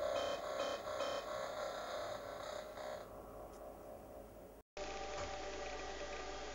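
Electronic music with a pulsing rhythm of about two to three beats a second fades out about halfway through. Near the end it cuts to dead silence for a split second, then a steady hiss with a low hum and several held tones begins.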